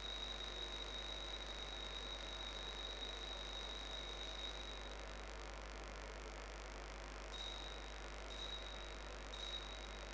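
Faint altar bell ringing at the elevation of the chalice: one high ringing tone held for about five seconds, then three short rings about a second apart near the end.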